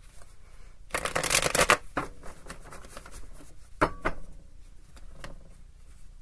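A deck of tarot cards being shuffled by hand: a dense run of fluttering card noise about a second in, then lighter rustles and a single sharp tap about four seconds in.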